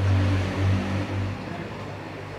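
Steady low electrical hum with a faint hiss of water from aquarium aeration gear; the hum is louder for the first second and a half, then drops away.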